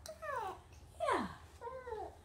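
A baby's short whiny vocalizations: three brief squeals, each sliding down in pitch.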